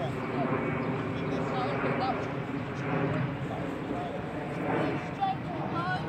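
Indistinct voices of boys calling and chattering to one another on the pitch, over a steady low drone.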